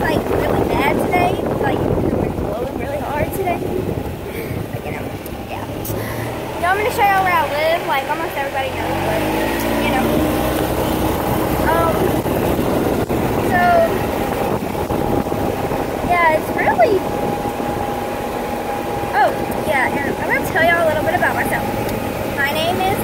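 A golf cart driving along, its motor and wheels running under a steady rush of wind and road noise, with a low tone that rises about eight to ten seconds in as it picks up speed. Voices talk now and then over it.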